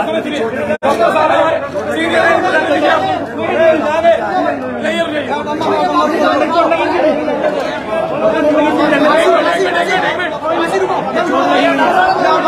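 A crowd of men talking over one another in a continuous jumble of voices, with a momentary drop-out about a second in.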